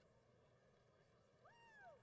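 Near silence in a quiet stadium, broken near the end by one short, high call that rises and then falls, like a single voice calling out from the crowd.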